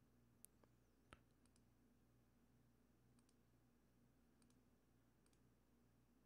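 Near silence: room tone with a handful of faint, short computer mouse clicks.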